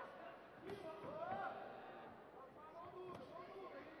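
Faint kickboxing arena sound: a distant voice shouts, one held rising call about a second in, and a couple of soft thuds of punches landing on a fighter's guard.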